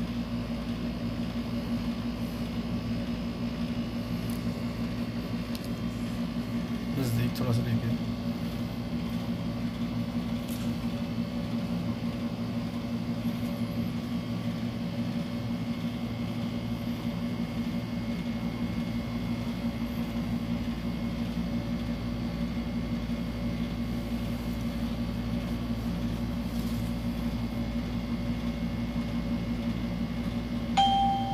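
A steady low mechanical hum made of several steady tones, with a brief louder sound about seven seconds in.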